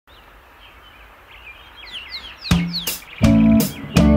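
Opening of a rock song: high, falling chirps like birdsong over a faint hiss, then about two and a half seconds in a loud hit and the full band comes in with strummed electric guitar chords, bass and drums on a steady beat.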